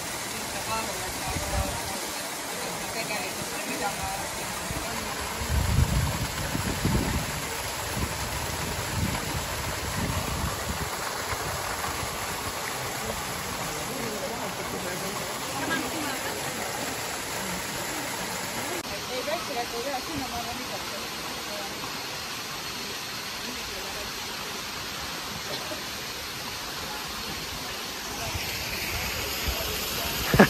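Small waterfall pouring into a rock pool: a steady rush of falling water, with a few low bumps about six seconds in.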